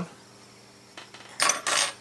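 Steel needle files clinking together as one is picked out of the set: a faint tick about a second in, then a short metallic clatter about half a second long.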